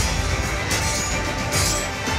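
Dramatic trailer music over a sword-fight montage, cut with sharp hits at the start, about two-thirds of a second in, and near the end.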